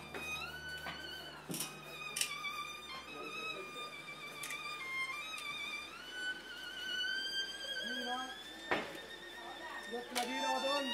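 Solo violin playing a slow melody of long held high notes with vibrato, gliding into some notes. A few sharp clicks or knocks sound briefly over it.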